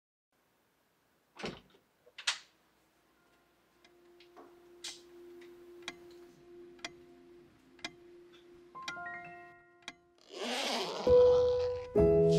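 Sparse edited soundtrack: two sharp knocks, then faint ticking about once a second over a low steady hum, a short rustle, and music with held notes coming in about a second before the end.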